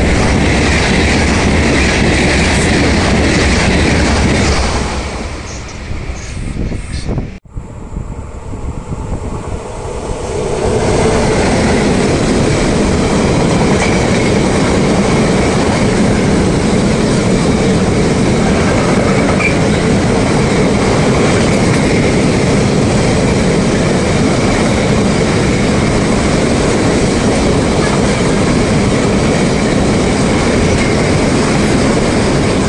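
A train passes close by at speed, loud for the first four seconds or so, then the sound drops, with a sudden brief cut-out about seven seconds in. From about ten seconds on, a long freight train of car-carrier wagons rolls past with a steady rumble and rattle of wheels on rails.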